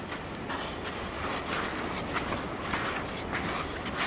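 Steady rushing noise of sea and wind on an open beach, a little louder in the middle.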